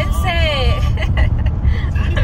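Steady low rumble of road and engine noise inside a car driving on a highway, with a voice speaking briefly in the first second.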